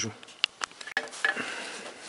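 A few separate metal clicks from a ratchet wrench with a universal-joint socket being worked on the lower nut of the thermostat housing.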